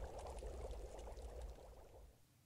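Faint rushing background noise over a low rumble, fading away and cutting off at about two seconds.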